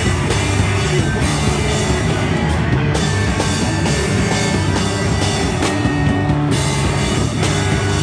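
Live rock band playing an instrumental song without vocals: loud, distorted electric guitars, bass and drum kit in a steady, dense wall of sound.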